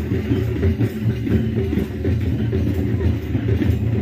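Folk dance music with heavy drumming, a steady pulsing beat strongest in the low end, over the din of a crowd.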